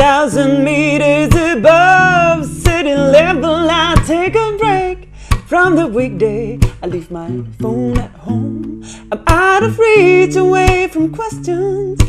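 A woman singing a slow melody with vibrato, accompanying herself on an acoustic guitar with strummed chords.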